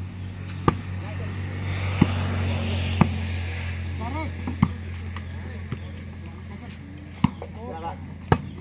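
A volleyball being hit back and forth by hand: five or so sharp slaps at irregular intervals of one to two seconds, with players' brief shouts between them, over a steady low hum.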